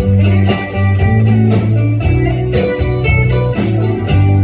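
A live country band playing with guitar out front over bass guitar and a steady drum beat.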